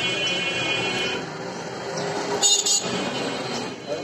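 Busy street noise, with a high buzzing tone for about the first second and a brief shrill sound about two and a half seconds in.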